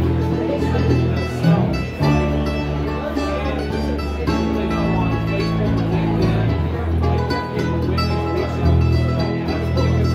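Live bluegrass band playing an instrumental passage: banjo, acoustic guitar, mandolin and upright bass, over a steady bass line.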